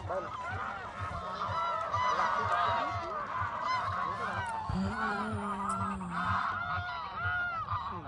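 A flock of greylag geese honking, many short calls overlapping continuously. A brief low hum joins in about halfway through.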